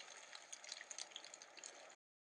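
Faint crackling of a fire sound effect: a low hiss with scattered small crackles, cut off abruptly at the end.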